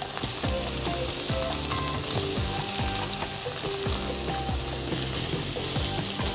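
Beef short rib slices sizzling steadily as they fry in hot oil in a wok, with pieces laid in one at a time. The oil is hot enough to sear and brown the surface of the meat quickly.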